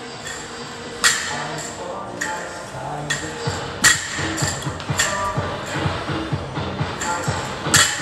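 Background music playing, with a few sharp thuds of a loaded barbell with rubber bumper plates being dropped and set down on the gym floor during clean and jerk reps, the loudest about a second in and just before four seconds.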